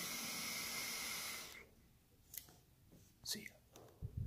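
A draw on a vape box mod: a steady hiss of air pulled through the atomizer while it fires, stopping about a second and a half in. A few short breath sounds follow as the vapour is exhaled.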